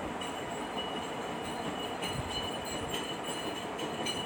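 Steady background noise with a faint high whine running through it.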